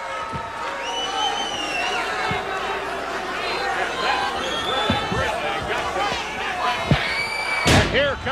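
Arena crowd shouting and calling out around a wrestling ring, with a few dull thuds of bodies on the ring mat. A heavy thud lands near the end: an elbow smash driven into the downed wrestler.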